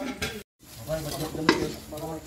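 Metal cooking pots being scrubbed and scraped during washing, with a sharp clink about one and a half seconds in.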